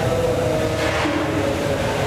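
Steady rumbling background noise of a large working kitchen hall, with a faint wavering hum.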